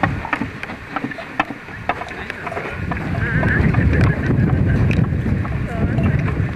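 Wooden-spoked handcart rolling over a dirt road, with irregular clicks and knocks from the cart, under a steady rumble of wind on the microphone.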